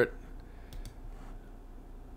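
Two faint, quick computer mouse clicks close together a little under a second in, over a low steady room hum.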